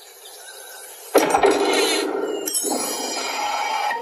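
Cartoon soundtrack effect for the little red door opening: a soft swell for about a second, then a sudden loud burst, followed by shimmering chime-like tones.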